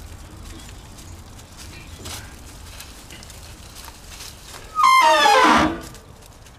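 A husky gives one loud, high-pitched yelping howl near the end, about a second long and falling in pitch. Before it there is only faint steady background noise.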